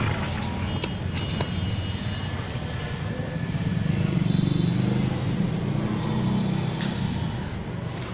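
A steady, low, engine-like rumble that grows a little louder around the middle.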